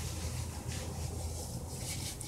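Gloved hands rubbing and working hair color rinse through wet hair, a soft scrubbing noise over a low steady hum.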